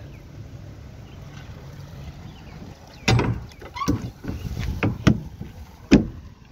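Knocks and clatter from a truck's empty cargo box and its rear door: a low rumble at first, then a run of thumps from about halfway, ending with one sharp loud bang.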